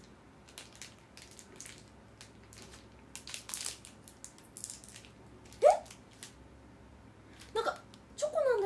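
Faint scattered rustling and clicking of small things being handled, broken a little past halfway by one short, sharp vocal sound, with a brief bit of voice near the end.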